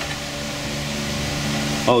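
Steady low mechanical hum with a faint even hiss, unchanging throughout.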